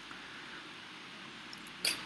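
Faint room hiss with no speech, then a few soft, sharp computer-mouse clicks near the end.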